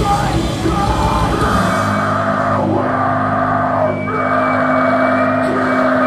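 Hardcore punk band playing live, heard in a raw bootleg recording, with vocals over distorted guitars. About a second and a half in, the heavy low end of the drums drops away, leaving a held, ringing guitar chord under the vocals.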